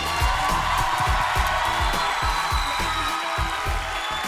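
Live Arabic pop band playing the closing bars of a song, with a steady drum beat under a long held note, and an audience cheering over it.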